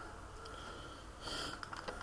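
Faint room hiss with a quick intake of breath through the nose a little over a second in, followed by a few faint clicks.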